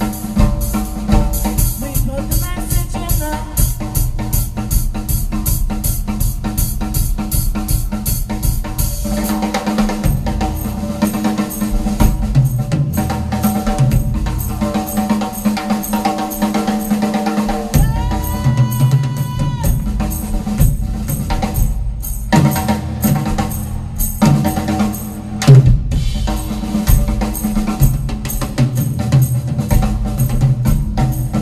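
Pearl drum kit played in a fast, busy solo, with bass drum, snare and cymbal strikes, over pitched accompanying music. The drumming pattern changes about nine seconds in, and a held pitched tone sounds for about a second and a half just past the middle.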